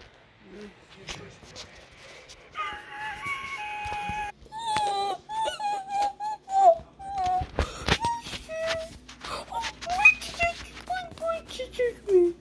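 A high voice wailing and moaning in short wavering calls broken by clicks, with one held note about three seconds in.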